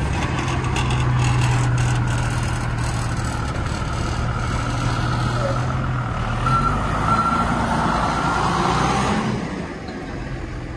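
Cummins 24-valve diesel in a rear-engine school bus idling with a steady low hum. A steady high-pitched tone sounds over it, with a couple of short beeps about two-thirds of the way in. The sound drops a little near the end.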